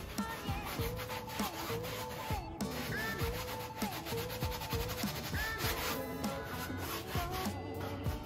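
Paintbrush scrubbing back and forth over drop-cloth canvas as homemade gesso is brushed on, under background music with a steady beat.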